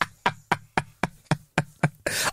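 A quick run of about eight sharp, evenly spaced knocks, roughly four a second.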